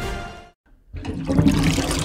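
Background music fades out, and after a brief silence a tap starts running, water pouring into a basin.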